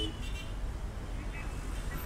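Street traffic ambience: a steady low rumble of vehicle engines, with a brief high tone right at the start.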